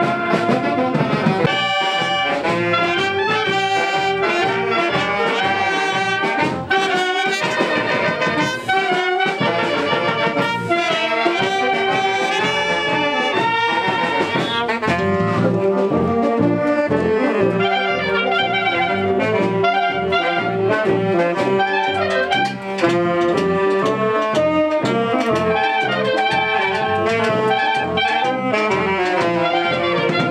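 Town wind band playing a tune with clarinets, trumpets and tuba.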